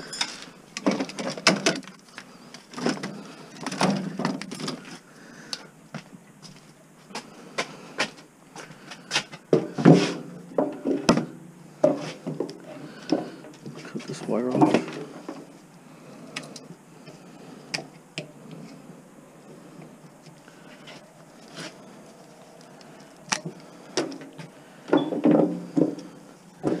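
Scrap electric motors and copper-wound stators being handled and set down on a bench scale: irregular knocks and clinks of metal throughout, with short stretches of muttered talk between.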